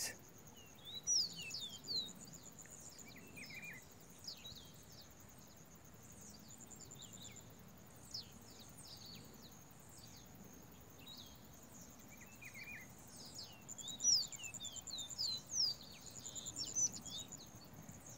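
Caboclinho seedeater song: quick, high, falling chirps, in one bout near the start and a denser one from about 13 s to 17 s, with scattered notes between. A steady high-pitched insect drone runs underneath and pulses now and then.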